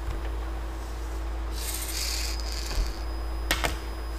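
LEGO Mindstorms servo motor and its gears whirring for about a second and a half as the P controller drives the arm to a new commanded position, followed by a couple of sharp clicks. A steady low hum lies underneath.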